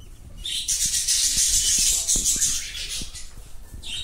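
Budgerigars chattering in a cage, a raspy high-pitched warble starting about half a second in and fading after about three seconds. Wings flutter and faint ticks come from feet on the perches and wire.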